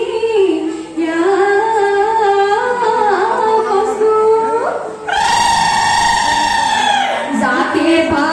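A woman singing a Bihu song into a microphone over a PA system, the melody moving in short phrases and then rising to one long held high note about five seconds in that lasts roughly two seconds.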